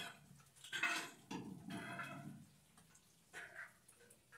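A dog making a few short, faint sounds.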